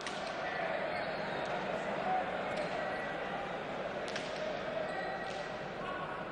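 Leather pelota struck bare-handed in a hand-pelota rally: several sharp cracks a second or so apart as the ball hits the players' hands, the front wall and the floor, over a steady crowd murmur.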